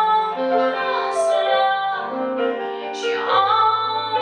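A woman singing a slow song with held notes, accompanied by a stage keyboard playing piano; a low bass note comes in a little over three seconds in.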